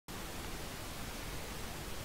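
Steady faint hiss of background noise, with no distinct events.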